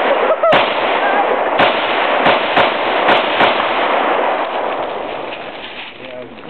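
AK-74 rifle in 5.45x39 firing about seven quick single shots at uneven spacing over the first three and a half seconds, each with a long echo trailing off through the woods.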